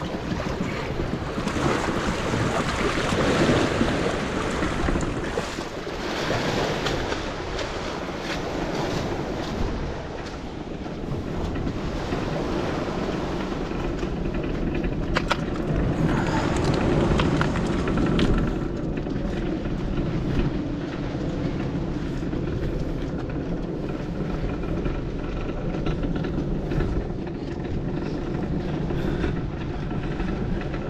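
Wind buffeting the microphone over water splashing, then a continuous rumble as the inflatable boat is hauled up a concrete ramp and across pavement.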